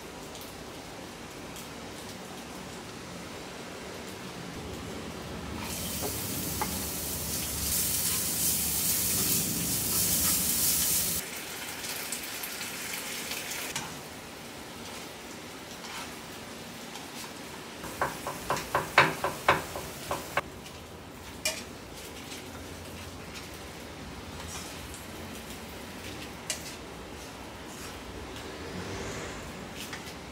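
Food sizzling in a hot frying pan: the sizzle starts about six seconds in, is loud for about five seconds, then fades to a low hiss. Later the pan is stirred with a quick run of about nine taps of a utensil against it, followed by a few single knocks.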